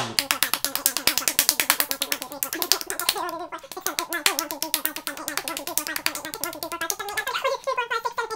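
Rapid high fives: a fast, steady run of bare palms slapping together, many slaps a second, with a voice running faintly under them from about a third of the way in.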